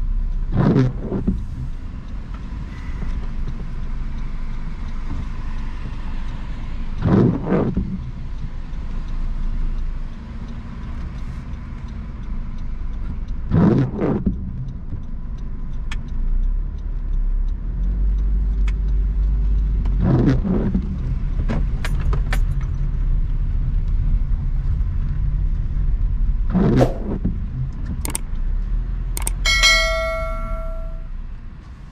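Windshield wipers on an intermittent setting sweeping a rain-wet windshield five times, about every six and a half seconds. Under them is the steady low rumble of a car in slow traffic. Just before the end come a couple of clicks and a chiming ding.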